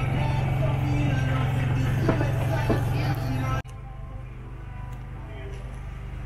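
Street-fair ambience: music and voices over a steady low hum. About three and a half seconds in, the sound cuts off abruptly to quieter background voices.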